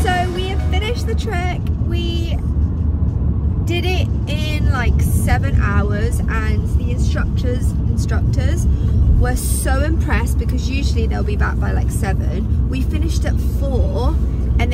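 Steady low rumble of a car driving, heard from inside the cabin, under a woman talking.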